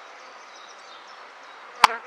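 Honeybees buzzing in a steady hum around an opened top bar hive, with a single sharp click near the end.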